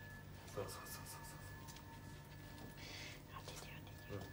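Soft rubbing and squishing of hands working shampoo lather into a wet dog's coat, over a steady faint electrical hum.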